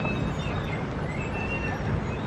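Low, steady rumble of a car creeping along at low speed, heard from inside the cabin.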